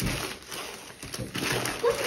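Wrapping paper and tissue paper tearing and crinkling as a gift is unwrapped by hand, with a brief high vocal sound near the end.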